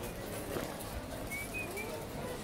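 Busy pedestrian street ambience: a steady murmur of passers-by, with a bird giving three short high chirps about a second and a half in.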